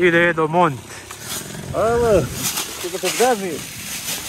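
Raised human voices calling out in several short, drawn-out shouts; no motorcycle engine is clearly running.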